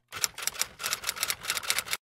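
Typewriter keystroke sound effect: a rapid, irregular run of sharp clicks, about eight a second, starting just after the beginning and cutting off suddenly near the end.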